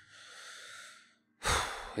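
A man's breathing close to the microphone: a long, soft breath out for about a second, then, after a short gap, a louder, sharper breath in just before he speaks again.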